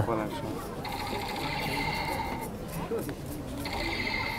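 A small bristle brush scrubbing mud off a fresh cordyceps in light, scratchy strokes. A steady machine whine cuts in twice, first for about a second and a half and again near the end.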